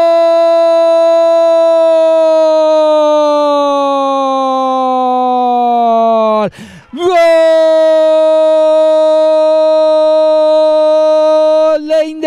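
A football commentator's long drawn-out goal cry: a loud voice holding one high note for about six seconds that sinks a little in pitch toward its end, a quick break for breath, then a second held note of about five seconds.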